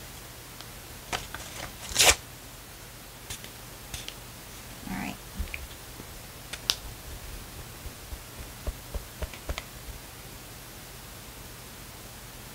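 A perfume sample atomizer gives one short spray onto a paper strip about two seconds in, the loudest sound. Scattered light clicks and rustles of the small sample bottle and paper being handled follow.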